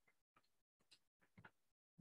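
Near silence with a few faint, irregularly spaced clicks of computer keyboard keys being typed.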